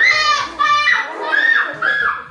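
A child shrieking in short, very high-pitched cries, about four or five in a row, each rising and falling.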